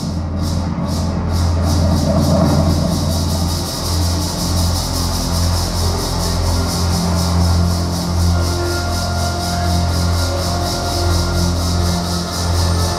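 Live improvised band music: a steady low bass drone under an even, high-pitched pulsing rhythm that quickens over the first few seconds, with short held tones drifting in and out above the drone.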